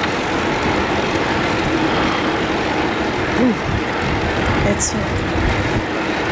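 Steady rush of wind over the microphone together with tyre noise from a bicycle ridden along a paved road.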